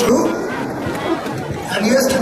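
Speech: a man's voice addressing the hall from the stage podium, in a language the English transcript does not capture.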